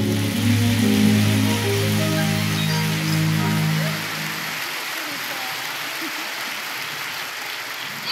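Orchestra holding the song's final chord, which cuts off about four seconds in, with live audience applause over it that carries on after the chord ends.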